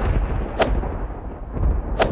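Intro sound-effect booms over a continuous deep rumble, with a sharp crack-like hit about half a second in and another at the end, as each pillar's word appears.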